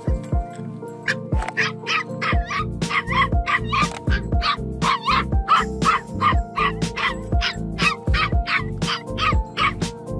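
A dog yipping over and over, about three short high-pitched yips a second, starting about a second in, over background music with a steady beat.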